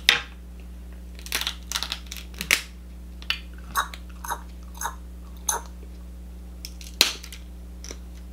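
Cooked king crab leg shell being cracked and pulled apart by hand: irregular sharp cracks and snaps, the loudest right at the start and about seven seconds in.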